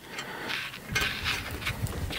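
Rustling handling noise of a stepper motor's sleeved cable being pulled and fed through the printer's aluminium frame, with a few faint light knocks.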